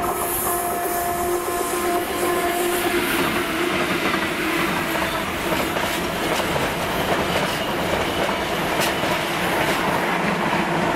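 Diesel-hauled container freight train passing close by at speed: a steady tone from the locomotive in the first three seconds, then the continuous noise of the container wagons rolling over the rails, with occasional sharp clicks from the wheels.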